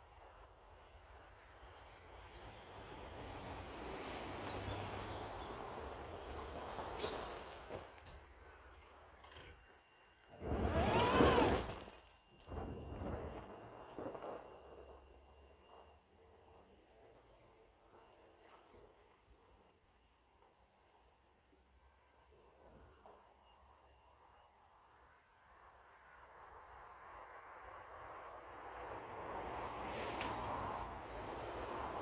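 Tyres crunching over gravel as a near-silent electric pickup truck drives up a driveway and back, the noise swelling and fading as it moves. A short, loud sound with a bending pitch cuts in about halfway through, lasting about a second and a half.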